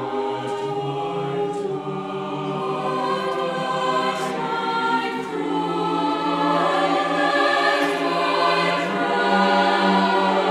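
Mixed-voice choir singing held chords in slow, sustained lines, the chords shifting a few times and the singing growing louder through the second half.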